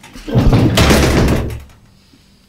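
A door being shut: one loud, rumbling noise lasting just over a second.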